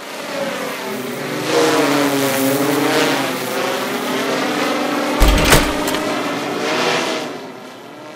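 Sound effect of a quadcopter drone's propellers whirring, the pitch sliding up and down with whooshing swells. A heavy thud comes a little past the middle, and the whir fades near the end.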